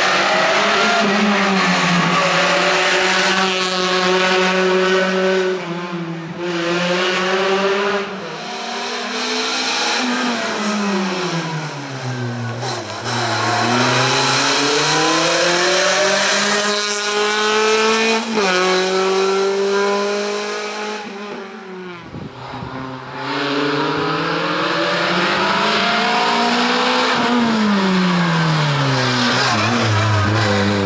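A first-generation Renault Clio slalom car's engine revving hard. Its pitch climbs and falls again and again as it accelerates between the cones and lifts off for the turns, with a softer spell a little past the middle.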